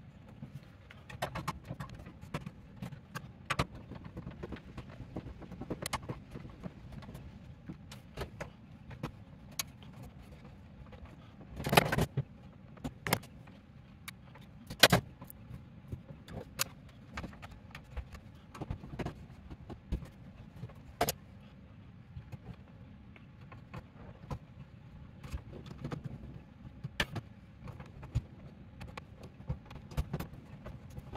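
Electrical wiring work in a steel breaker panel: scattered small metallic clicks and taps and the rustle of stiff insulated conductors being bent and pushed into place, with a few louder knocks about twelve and fifteen seconds in.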